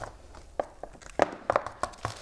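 Hand pruners closing with a sharp click at the start, then several lighter clicks and taps as the pruners are set down and a small plastic nursery pot is handled on a wooden table.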